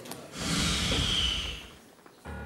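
A long, breathy sigh let out through a hand held over the mouth, lasting about a second and a half and then fading: a dismayed reaction to bad news.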